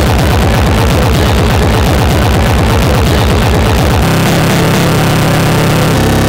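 Speedcore electronic music: a rapid, machine-like stream of heavily distorted kick drums, many per second, each dropping in pitch. About four seconds in it switches to a fast buzzing roll on one low note.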